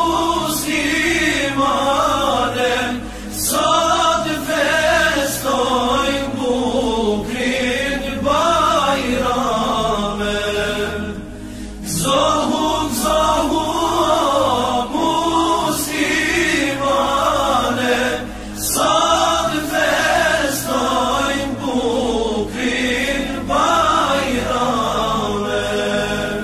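Chanted vocal music: voices singing long, wavering phrases with short breaks between them.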